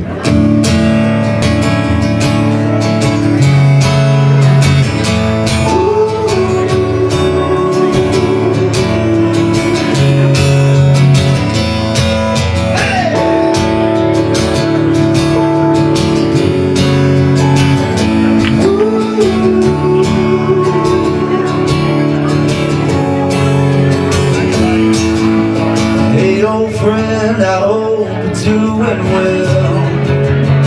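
Acoustic guitar strummed through the instrumental introduction of a slow song, played live, with a held, wavering melody line over the chords.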